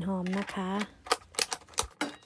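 A quick run of about six sharp taps in the second half, unevenly spaced.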